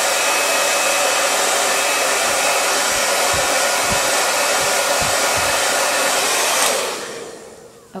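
Handheld hair dryer blowing steadily on a lock of freshly sprayed, teased hair, then switched off about seven seconds in and winding down over a second.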